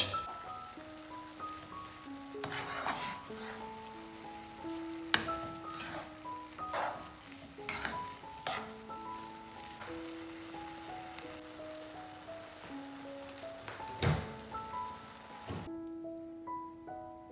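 Metal tongs stirring and tossing sauced spaghetti in a non-stick frying pan: a handful of irregular scrapes and clinks against the pan, the sharpest about five seconds in, over background music with piano-like notes.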